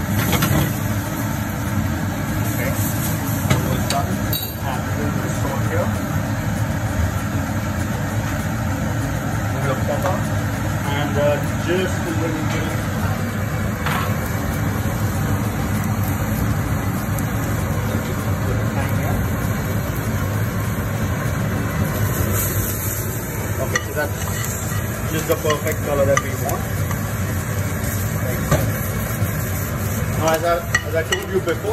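Sliced mushrooms sizzling in a non-stick frying pan over a gas flame, with a steady low hum behind them.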